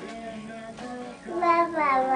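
A children's song playing: a high, child-like singing voice over music, louder in the second half.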